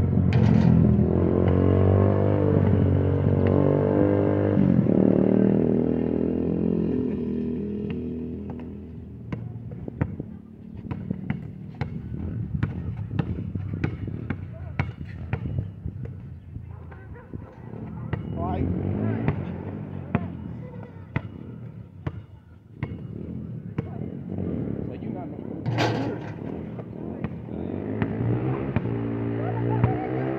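Basketball dribbled and bouncing on an outdoor asphalt court during one-on-one play: many short sharp knocks at an uneven pace, with one loud sharp bang about 26 seconds in. For the first several seconds a loud pitched sound with several tones sits over it and fades away by about eight seconds in.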